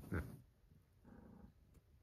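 A cat growling briefly and low, with a fainter growl about a second later.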